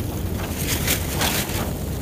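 Wind buffeting the microphone: a steady low rumble, with several short, irregular hissing gusts.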